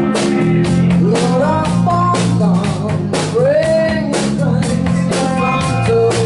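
Live rock band playing: a woman singing over electric bass, electric guitar and a drum kit keeping a steady beat.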